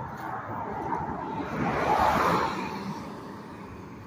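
A car passing on the road, its noise swelling to a peak about two seconds in and then fading away.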